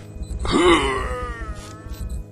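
A single wordless vocal cry that starts about half a second in, rises in pitch and then slides down, fading after about a second, over a steady low rumble.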